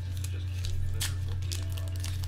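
Trading-card pack wrapper being torn open and crinkled by hand: a few sharp crackles, the loudest about a second in, over a steady low electrical hum.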